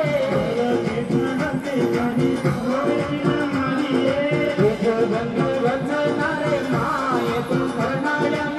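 A Rajasthani devotional bhajan: a voice singing with instrumental accompaniment, played through stage loudspeakers.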